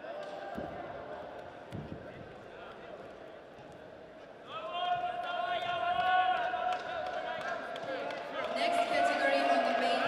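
Loud, drawn-out shouting from one or more men in a large hall begins about halfway through, in two long stretches. Earlier it is quieter, with a few dull thuds from the wrestlers' hand-fighting.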